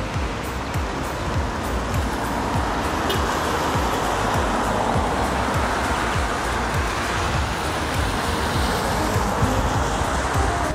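Background music with a steady low beat over a steady hiss of drizzle and wet street noise.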